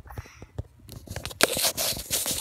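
Close scraping and rustling with many quick clicks, like objects or the phone being handled right at the microphone. It gets much louder from a little over halfway through.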